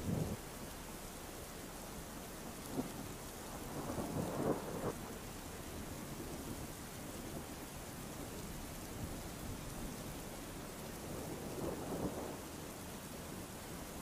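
Faint steady rain, with low rumbles of distant thunder, the largest about four seconds in.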